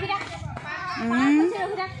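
Many young children's voices overlapping as they play together, calling and chattering at once. About a second in, one child's voice rises in pitch and is the loudest.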